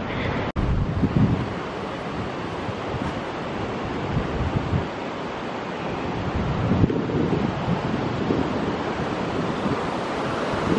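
Wind buffeting the microphone: a steady rushing noise with uneven low gusts.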